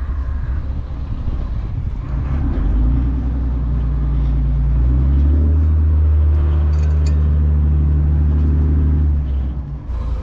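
The Dutch barge's inboard engine running with a steady low hum. It gets louder about three seconds in, louder again at five, and eases off about a second before the end, as the throttle is worked. A big lump of plastic is wrapped around the propeller, which the owner blames for the engine's weird tone.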